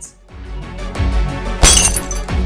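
Dramatic film music, then about a second and a half in a sudden loud crash of a glass pane shattering under a punch, with brief high ringing of glass after it.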